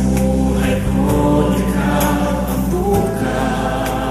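Tagalog worship song: sung vocals over a soft instrumental backing, with a held bass note that shifts about three seconds in.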